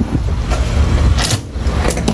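Wind buffeting the microphone, a heavy uneven rumble, with two sharp clicks, one about halfway through and one near the end.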